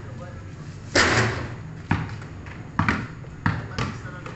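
Basketball bouncing on an outdoor concrete court: several short, sharp bounces at uneven spacing in the second half. A louder, longer crash comes about a second in.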